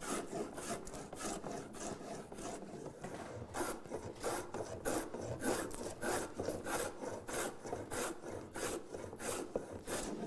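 Metal plough plane cutting a groove along the edge of a wooden board: a quick run of short, rasping cutting strokes, two or three a second, as the iron takes shavings.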